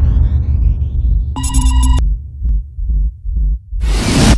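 Electronic intro sting for a music label's logo: deep throbbing bass pulses, a bright ringing chord that sounds for about half a second a bit over a second in, and a burst of noise just before the end.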